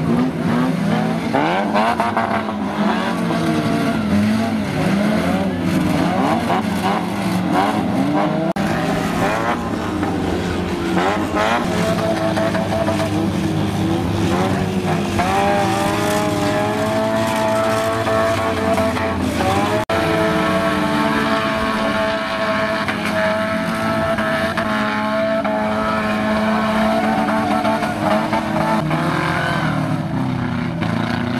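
Several old car engines revving hard and falling back as battered race cars slide and spin their wheels on a muddy track. From about halfway, one engine holds steady at high revs over the rest.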